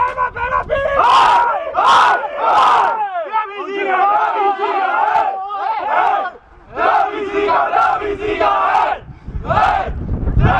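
A group of men in a team huddle shouting a chant together in loud rhythmic bursts about once a second, a victory cheer.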